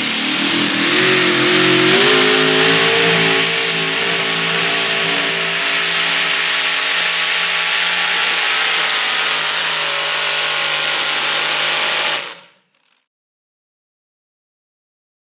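Supercharged engine of a modified pulling tractor running hard under load while pulling a sled. Its pitch rises over the first couple of seconds and then holds steady. The sound cuts off abruptly about twelve seconds in.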